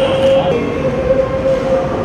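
A loud steady held tone over a dense murmur of background noise, dropping slightly in pitch about half a second in.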